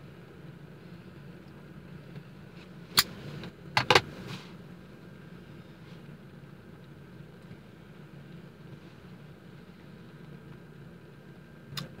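A man puffing on a tobacco pipe inside a car: a steady low hum throughout, with a few sharp clicks about three and four seconds in.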